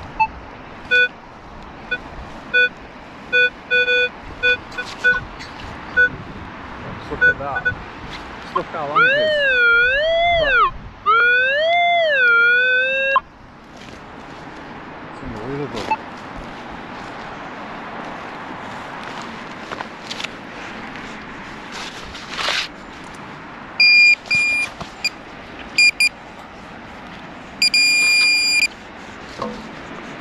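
Metal detector sounding off on a buried target: a run of short, broken beeps for the first seven seconds or so, a 'very spitty signal', then a loud tone warbling up and down for about four seconds. After a stretch of digging noise with a couple of knocks, higher-pitched beeps come in short bursts near the end.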